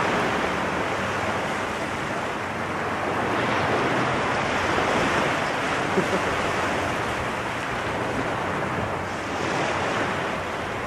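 Small waves breaking and washing up onto a shell beach, swelling louder around the middle and again near the end, with wind on the microphone. A couple of faint sharp clicks about six seconds in.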